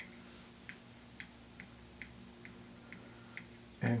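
Tying thread being wound back along a fly hook's shank with a bobbin holder: a run of light, sharp clicks about two to two and a half a second, stopping shortly before the end.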